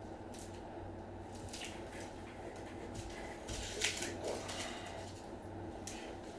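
Soft crinkling and rustling of a clear plastic card sleeve handled in gloved hands. It comes in scattered short bursts, the loudest about four seconds in, over a faint low steady hum.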